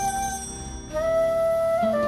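Jazz-bossa record with a flute carrying the melody: a held note fades out, and after a brief lull a new sustained note comes in about a second later over the band.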